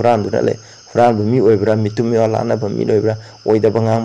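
A man speaking, with a steady high-pitched insect trill in the background.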